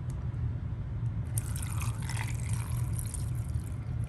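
Water being poured from a small plastic cup into a plastic container, starting about a second and a half in and running steadily on.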